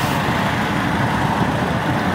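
Steady car engine and cabin noise heard from inside the car: an even, unbroken rumble.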